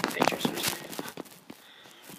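Passenger carriage of a steam train clattering along the rails in quick, irregular knocks and clicks. The clatter dies down to a low level after about a second and a half.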